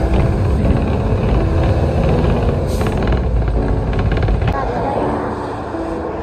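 Low road rumble of a moving vehicle heard from inside, with background music laid over it; the rumble thins out shortly before the end.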